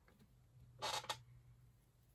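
A brief soft rustle about a second in, hands handling the hair of a synthetic lace front wig as it is settled at the hairline; otherwise very quiet.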